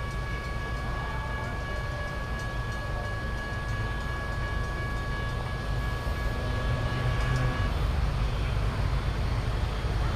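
Approaching CSX diesel locomotive, a low rumble that grows louder over the last couple of seconds. A thin steady high tone runs with it and stops suddenly about three-quarters of the way through.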